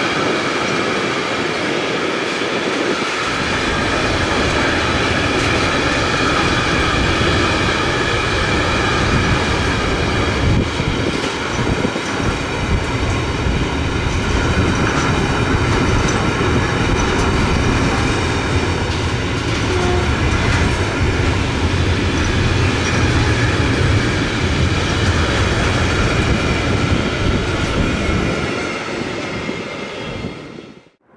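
Container flat wagons of a long intermodal freight train rolling past on electrified track, a steady loud rumble and clatter of wheels on rail. The sound dies away near the end as the last wagons go by.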